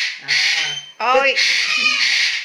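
Galah (rose-breasted cockatoo) giving repeated harsh screeches, about two a second, with a louder call rising in pitch about a second in.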